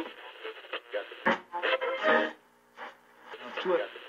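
A voice talking over soft music, with a short pause a little past halfway.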